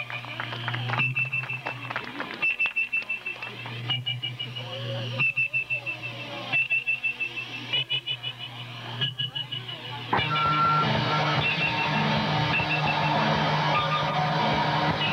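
Hardcore punk band playing live through an outdoor PA. A sparse, stop-start passage of guitar stabs about every second and a half, over a steady bass hum and a high whining guitar feedback tone, gives way about ten seconds in to the full band playing loud with distorted guitars and drums.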